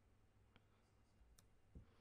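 Near silence: room tone with two faint clicks, about half a second and a second and a half in.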